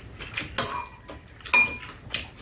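Metal spoons clinking against bowls while eating: three sharp clinks with a short ring, the loudest about half a second in.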